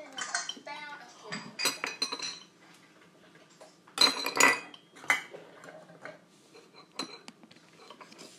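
Metal spoon clinking and scraping against a glass mixing bowl as yogurt is spooned in, in several short bursts, the loudest about four seconds in.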